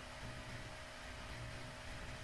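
Faint steady hiss with a low, steady hum underneath: the background noise of a voice-over microphone between spoken lines.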